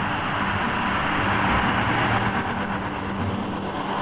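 Night insects chirping in a fast, even, high-pitched pulse, about ten a second, over a steady hiss and a low hum. The chirping cuts off at the very end.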